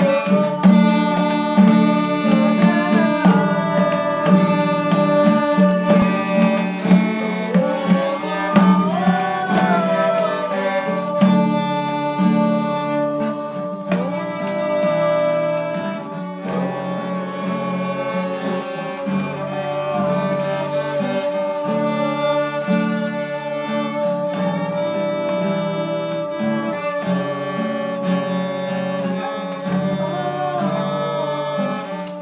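Live acoustic music: a bowed violin plays a sliding, ornamented melody over a steady low sustained accompaniment. Hand-drum strokes are heard through the first half and thin out after the middle.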